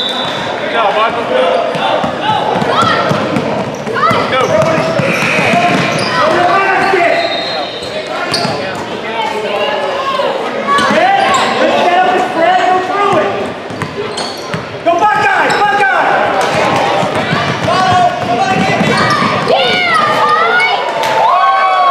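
A basketball game in a large gym: a basketball bouncing on the hardwood court amid indistinct shouting from players and spectators, echoing in the hall. The voices grow louder about fifteen seconds in.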